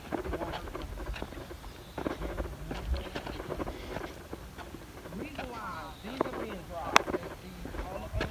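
Footsteps on dry soil and dry grass, with faint voices in the background and a single sharp click near the end.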